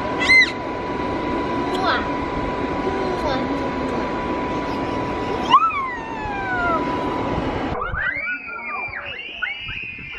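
Steady whir of an inflatable bounce house's electric blower with a constant hum, a child's short squeals heard over it. It cuts off abruptly about eight seconds in, replaced by children's high-pitched shrieks and voices.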